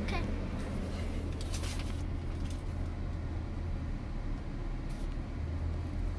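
Steady low hum of a car idling, heard inside the closed cabin, with a few brief rustles and knocks from the phone being handled in the first two seconds.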